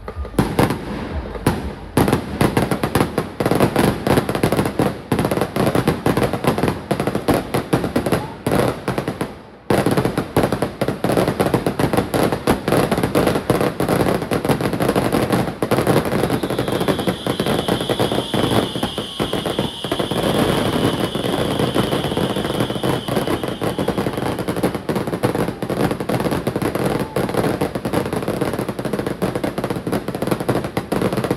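Fireworks display: a rapid, near-continuous barrage of bangs and crackling, with a brief lull about nine seconds in. A steady high-pitched tone runs for several seconds past the middle.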